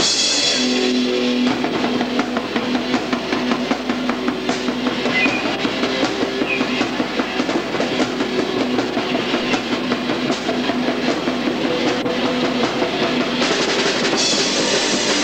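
A rock band playing live at full volume: a fast, even beat on the drum kit with electric guitar.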